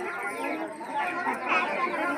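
Crowd chatter: many voices talking over one another at once, with no single voice standing out.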